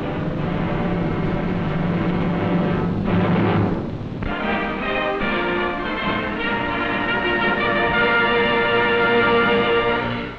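Orchestral music score, busy at first, then settling about four seconds in into a long held chord that carries through to the end.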